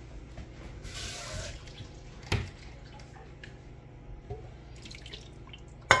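Tap water running briefly into an emptied soup can about a second in, followed a moment later by a single knock and another sharp knock near the end.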